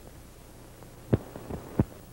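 Low steady electrical hum and faint hiss from an analog video tape transfer running on a blank stretch, with three sharp clicks in the second half.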